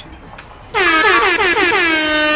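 Air horn sound effect: a stutter of quick blasts, then one long held blast, starting about three quarters of a second in.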